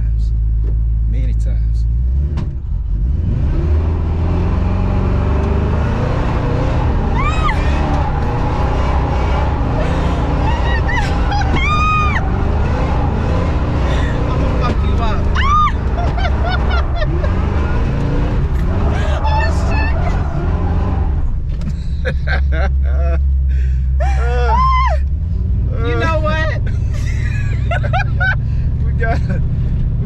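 Supercharged Oldsmobile Cutlass engine held at high revs with the rear tyres spinning through donuts, heard from inside the cabin, from about two seconds in until about twenty-one seconds, while a passenger screams several times. The engine then drops back to idle and she laughs.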